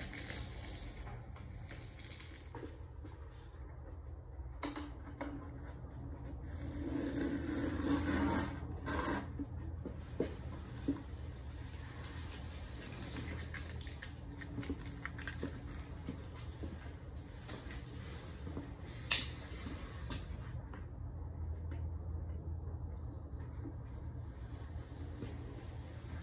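Masking tape and paper being peeled off a freshly painted motorcycle fender: a crackling, ripping peel that swells about a third of the way in, followed by a few light clicks and one sharp tap past the three-quarter mark, over a steady low hum.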